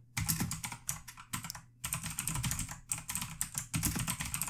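Typing on a computer keyboard: a quick, uneven run of key clicks, with a short pause about a second and a half in.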